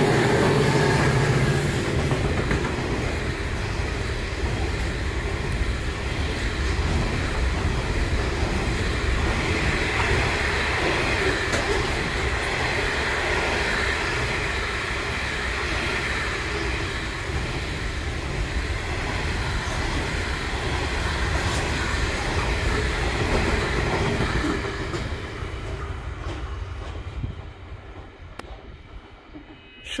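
Freight train passing through at speed behind two 81 class diesel-electric locomotives. The locomotives' engines drone in the first second or two. Then a long string of hopper wagons rolls by with steady wheel clatter and rumble, which fades away over the last few seconds.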